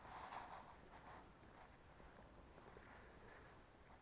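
Near silence: faint outdoor background with a brief, faint rustle near the start.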